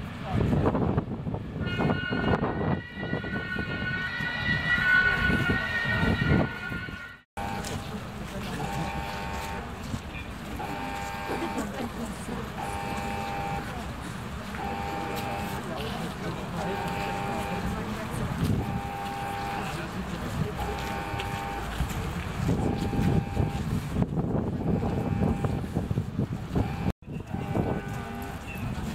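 An electronic warning beeper sounds about once a second, a steady pitched beep over outdoor street noise and voices. Before it, about seven seconds of people talking, ended by an abrupt cut.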